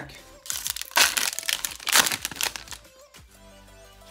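A Panini Prizm trading-card pack's wrapper torn open and crinkled, a run of loud crackles from about half a second in until a little past two and a half seconds. Soft background music plays underneath.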